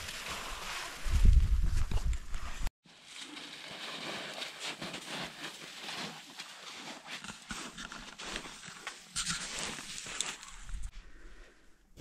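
Boots crunching and scraping in snow with rustling of clothing and climbing gear, as a climber moves on a steep snow slope. About a second in, a loud low rumble of wind on the microphone covers it. After a brief break near three seconds, softer crunching steps and scratching in snow go on.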